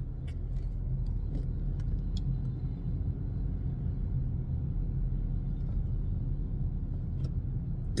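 Steady low rumble of road and engine noise inside the cabin of a moving 2012 Honda Civic, with a few faint ticks.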